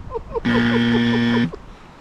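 A low, flat buzzer tone sounds for about a second, starting about half a second in, just after an earlier buzz has cut off. It has the steady electronic quality of a wrong-answer buzzer, and a man's voice is heard faintly over it.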